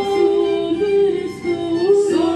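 Voices singing a slow hymn in long held notes.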